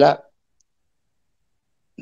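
A man speaking in Hindi finishes a word about a quarter second in, then dead silence for the rest of the pause.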